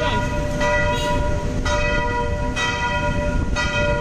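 Church bell tolling, struck about once a second, each stroke ringing on into the next, over a low steady rumble.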